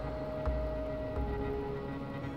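Instrumental backing music from a pop-rock song, with no voice: a held note that steps down in pitch a little past halfway, over a low bass.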